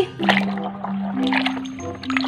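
A hand swishing and scrubbing in a basin of soapy water, with a few short splashes. Background music with long held low notes plays under it.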